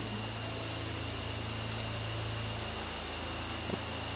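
Steady nighttime chorus of crickets, several high shrill tones layered together, over a low steady hum.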